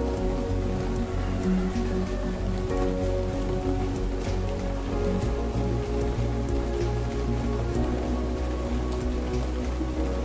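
Steady rain with scattered dripping, mixed with slow music of held notes over a low bass line.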